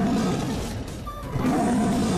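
Tiger roar sound effect, heard twice: one dying away in the first half-second, another starting about one and a half seconds in, over dramatic background music.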